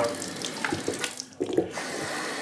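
Water running from a faucet into a wide, shallow vanity sink basin, splashing steadily, with a brief lull about one and a half seconds in.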